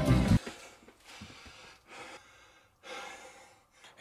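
A strummed guitar music track cuts off about half a second in. It is followed by a man breathing hard, with three or four audible out-of-breath breaths about a second apart.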